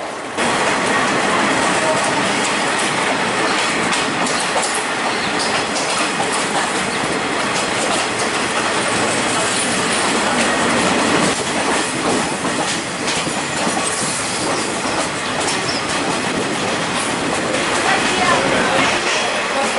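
A passenger train running along the track, heard from inside a carriage: a steady rattling rumble with the clatter of the wheels over the rails. It starts abruptly just after the beginning.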